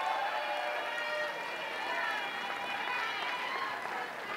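Theatre audience applauding and cheering, with many voices calling out over the clapping.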